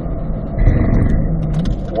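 Chevrolet Corvette C8's mid-mounted 6.2-litre V8 heard from inside the cabin, running under braking as the car slows into a corner. Near the end the engine pitch rises briefly as the car downshifts from fourth to third, then holds a steadier note.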